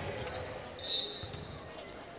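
Basketball bouncing on a hardwood court, faint under the gym's background noise, with a brief high tone about a second in.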